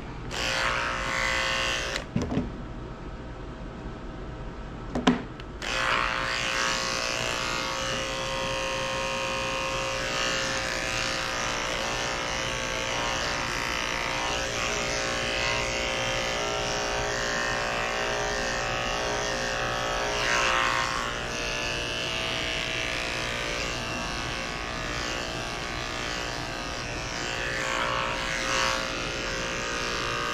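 Corded electric grooming clippers running with a steady buzz as they are worked over a poodle's coat. After a brief stretch near the start and a couple of sharp knocks, the clippers start up about five and a half seconds in and run on.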